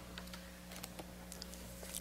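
Quiet room with a low steady hum and a few faint, scattered small clicks.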